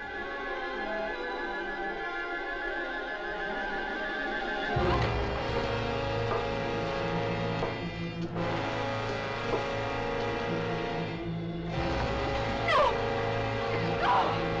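Suspenseful film score music: sustained high tones at first, then a heavier low part coming in about a third of the way through and swelling, with sharp downward swoops near the end.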